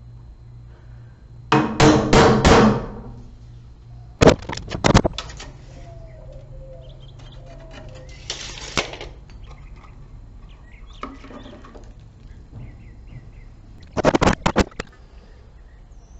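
Intermittent handling noises of construction work among bare wooden wall studs: a loud clattering rustle about two seconds in, a quick run of sharp knocks around four seconds, a short scrape near the middle, and another run of knocks near the end. Faint bird chirps come through in the quieter gaps.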